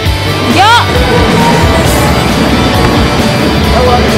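Loud music track laid over the video, dense and continuous, with a short swooping tone about half a second in.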